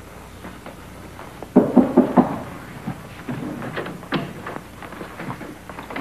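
Three quick knocks on a door about a second and a half in, followed by irregular footsteps crossing the room.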